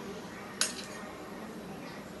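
A metal slotted spoon strikes a wok once with a sharp clink about half a second in, over a steady low hiss.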